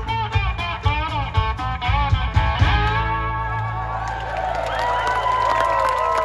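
Live blues band with electric guitars, bass and drums playing the close of a song: about three seconds of driving rhythm with drum hits, then a held final chord with an electric guitar bending notes over it.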